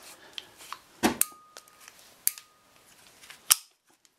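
Sharp metallic clicks from a hand-operated PEX fitting tool being handled as a pipe is set into its jaws: three distinct clicks about a second apart, the last the loudest, with quieter handling ticks between them.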